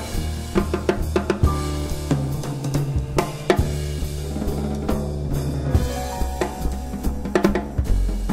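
Live jazz: drum kit and plucked double bass playing together, the drums busy with frequent snare, bass-drum and cymbal strokes over a walking line of low bass notes.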